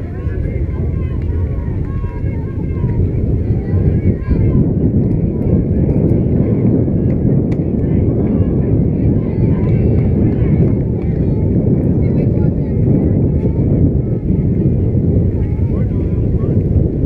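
Wind rumbling on the camera microphone, a loud steady low rumble, with faint distant voices of players and spectators. About seven and a half seconds in comes a faint pop of a pitch landing in the catcher's mitt.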